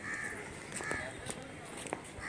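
A bird calling outdoors: two short calls about three-quarters of a second apart, part of a run of similar calls.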